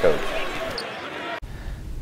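Game sound from a high-school gym: a basketball bouncing on the hardwood court, with a short high squeak partway through. It cuts off suddenly to quiet room tone.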